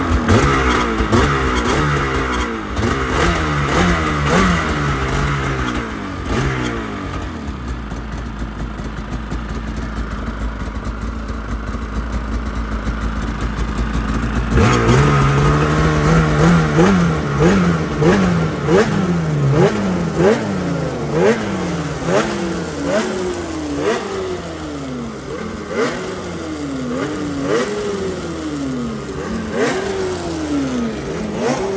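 Polaris Indy 9R snowmobile's freshly built two-stroke engine being blipped again and again, each rev rising and falling about once a second. It settles to a steady idle for several seconds midway, then the blips start again, while the new engine is put through heat cycles.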